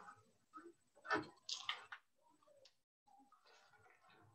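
Quiet room with a few faint, short clicks and rustles, most of them in the first two seconds.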